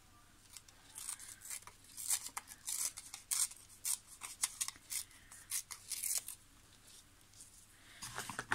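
A small piece of paper torn by hand in a series of short rips along its edges, ripping off the straight edges to leave them rough; the rips stop about six and a half seconds in.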